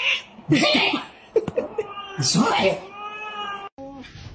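Domestic cat meowing in long, drawn-out, wavering calls: one about half a second in and a second about two seconds in, with a few short sounds between. The sound cuts off suddenly near the end.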